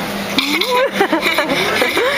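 A girl's voice giggling and talking, high and wavering in pitch. A steady low hum fades out just as her voice comes in.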